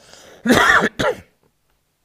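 A man clears his throat with two short coughs, the first longer and the second briefer, about half a second apart.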